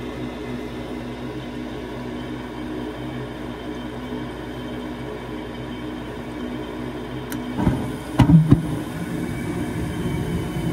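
Gas furnace lighting off: the draft inducer hums steadily while the hot surface igniter heats, then about seven seconds in a click is followed by the burners catching with a sudden rush and two sharp pops, settling into a steady rumble of flame on low stage. The light-off is "a little feisty".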